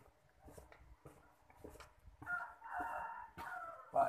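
A rooster crowing once, a drawn-out call of about a second and a half starting about two seconds in. Faint clicks and handling sounds come before it.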